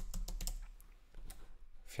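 Typing on a computer keyboard: a quick run of keystrokes that thins out after about half a second to a few isolated clicks.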